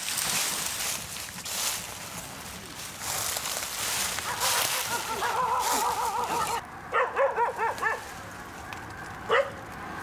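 Dry leaves and branches rustling as someone pushes through brush. From about four seconds in, a feral white dog gives a wavering whine, then a quick run of four or five short yelping barks about seven seconds in and a single bark near the end.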